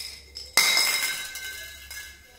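An empty metal aerosol spray-paint can set down on concrete: a sharp clank about half a second in, then a metallic ring that fades over the next second or so.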